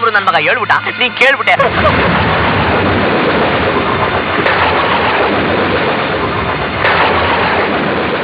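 Thunder sound effect: a long, loud rumbling roll of thunder that starts about a second and a half in, swells again twice, and keeps going.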